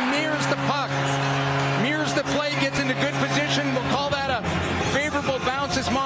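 Arena goal horn sounding one long, steady low blast over a cheering crowd after a Maple Leafs goal. About four seconds in, the horn gives way to a different low, steady tone.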